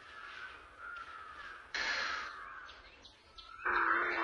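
A crow cawing once, a sudden harsh call about two seconds in, over faint bird chirping. Music begins near the end.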